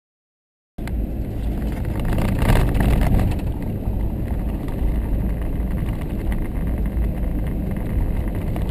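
Driving noise of an SUV on a dirt forest road, heard from inside the cab: a steady rumble of tyres and engine that starts abruptly about a second in, with a brief louder rush around two and a half seconds.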